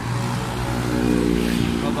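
A motor vehicle driving past, its engine a steady hum that grows louder toward the middle and rises slightly in pitch before fading.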